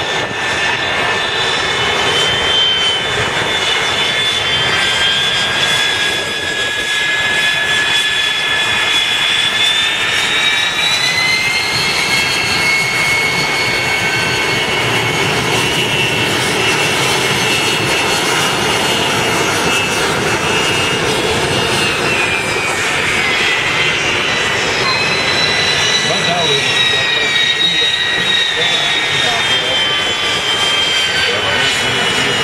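Several Aero L-39 Albatros jet trainers taxiing past close by, their turbofan engines giving a loud, steady rushing whine. The several high whining tones slide up and down in pitch as the jets roll by.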